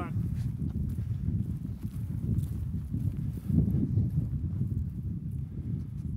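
Footsteps walking over dry, loose tilled soil: an irregular run of dull, low steps, loudest about three and a half seconds in.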